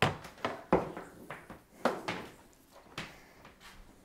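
A handful of light, separate knocks and clicks from an extension cord being handled and moved, about five in all with quiet between.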